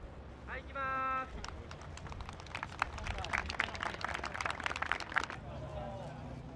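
A short call by one voice, then a few seconds of scattered, irregular handclaps from a small group amid chatter, stopping about five seconds in.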